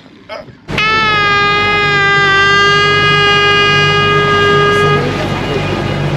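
A single long air-horn blast starting under a second in, dipping briefly in pitch at the onset and then holding one steady note for about four seconds before stopping, with a low rumble underneath that carries on after it.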